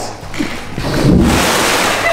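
CO2 fire extinguisher discharging while held underwater in a pool: a sudden loud rushing hiss with a low rumble that starts about a second in.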